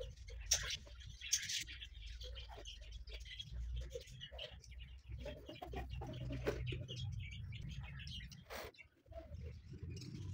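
A cloth rubbing and scraping on the plastic motor housing of a juicer, with short scratches and light knocks as the housing is handled and its vent grille is wiped.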